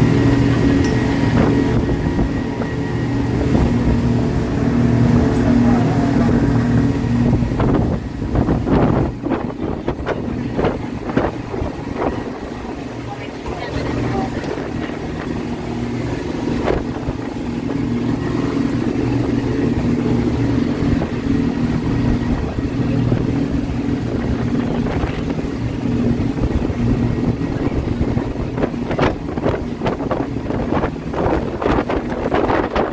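Motorboat engine running steadily under way, a constant drone with wind and water noise over it, and a few short knocks about eight to twelve seconds in and again near the end.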